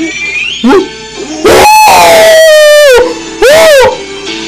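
A man howling in loud, drawn-out "ooh" calls: a short one about half a second in, a long one from about a second and a half to three seconds that falls in pitch, and a short rising-and-falling one near the end. Background music plays underneath.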